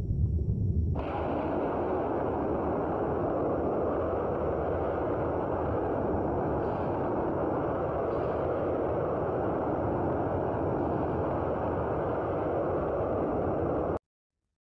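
Blast sound effect of a window being blown in by a blast wave: a deep boom in the first second, then a steady, dense rushing noise that holds evenly and cuts off suddenly at the end.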